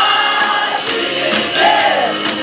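Live contemporary worship song: singers on microphones, amplified through a PA, over a band with a steady beat.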